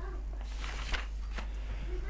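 Paper pages of a book rustling and being turned by hand, with a sharp paper click about a second in, over a steady low electrical hum. A faint short pitched call is heard near the end.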